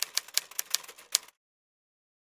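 Typewriter-style typing sound effect: a quick, uneven run of key clicks that stops about a second and a quarter in.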